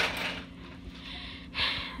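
A woman breathing close to the microphone: two audible breaths about a second and a half apart, over a steady low background hum.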